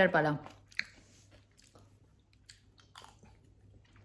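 A woman's voice ending a phrase, then a near-quiet room with a steady low hum and a few faint, short clicks.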